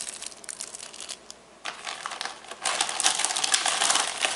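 Clear plastic bags of polyester film capacitors crinkling as they are handled, dropping off briefly about a second in and louder in the last second and a half.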